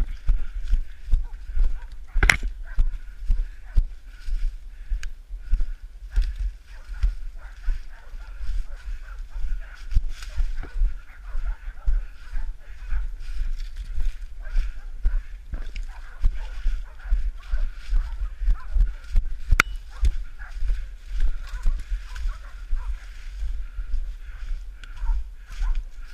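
Footsteps crunching through dry fallen leaves at a steady walking pace, with rumble and knocks from the handheld or worn microphone.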